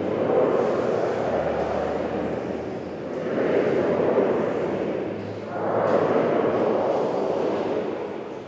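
Congregation reciting a spoken response together in a large, echoing church, the many voices blurring into a murmur that rises and falls in three phrases.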